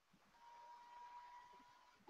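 Near silence, with a faint steady tone lasting about a second in the middle.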